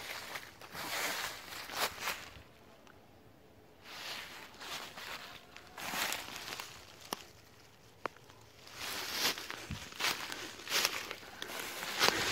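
Footsteps through a thick layer of fallen autumn leaves, rustling in uneven bursts, with a quiet break of about a second and a half a couple of seconds in.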